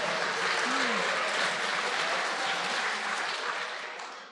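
Audience applauding after a punchline, dying away near the end.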